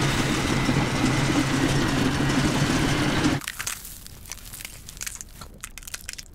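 Electric stand mixer running with a steady motor hum for about three and a half seconds, then cutting off abruptly. Faint crunching and clicking follow.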